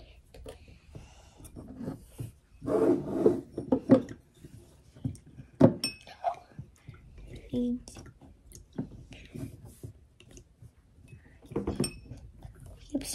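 A spoon stirring turmeric into water in a drinking glass, clinking against the glass several times, with one sharper clink that rings briefly about six seconds in.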